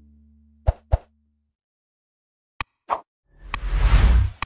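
The song's last guitar chord dies away, then short pop and click sound effects of a like-and-subscribe button animation: two pops about a second in, a click and a pop near three seconds, then a rushing whoosh with a click near the end.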